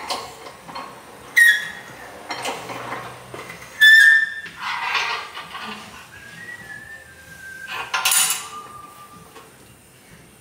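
Steel plates and tooling being set down and shifted on a hydraulic press bed: sharp metal clanks that ring briefly, the three loudest about one and a half, four and eight seconds in, with a scrape of metal sliding on metal between them.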